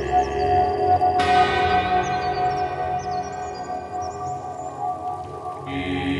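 Ambient meditation music: a steady sustained drone, with a chime-like note struck about a second in that rings on and slowly fades, and small high chirps above. A new lower tone comes in near the end.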